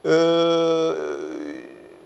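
A man's drawn-out hesitation sound, a held 'eee' at a steady pitch for about a second, trailing off.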